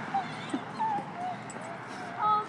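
A dog whimpering: four or five short, high whines, about half a second apart.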